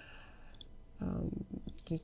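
A few light clicks of a wireless computer mouse's buttons: one about half a second in and a couple near the end, with a soft murmur of the voice in between.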